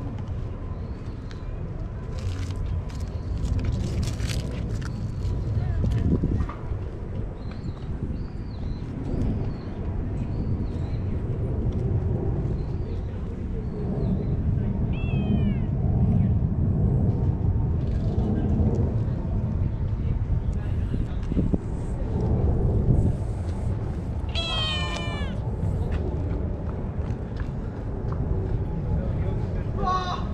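Cat meowing a few times: one short falling meow about halfway through, then a longer run of meows near the end, with another starting right at the end. A steady low rumble runs underneath.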